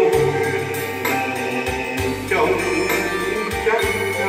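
A man singing through a microphone and PA with held, wavering notes, accompanied by an electronic keyboard playing sustained bass notes and chords over a steady drum beat.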